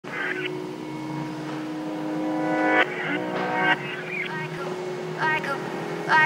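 Background music: the intro of an electronic pop song, with held synth notes and short vocal phrases.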